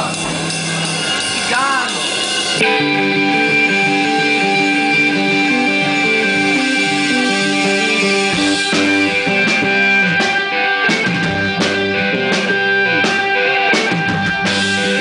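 Live rock band: electric guitar and bass start a song about two and a half seconds in with sustained, steady notes, and drum kit hits come in around nine seconds in.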